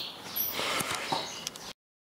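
Faint rustle and a few soft knocks of a handheld camera being swung around, cutting off abruptly to dead silence a little before the end.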